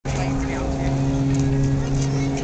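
A steady machine hum holding several fixed pitches, with people's voices chattering over it.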